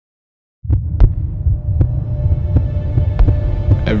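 A deep, throbbing low rumble starts about half a second in, with sharp knocks landing roughly every half second to second over it.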